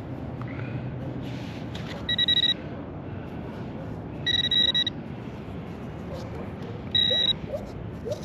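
Handheld metal-detecting pinpointer giving three short electronic beeps, each about half a second, as it is probed through loose dug soil: it is signalling a metal target in the dirt.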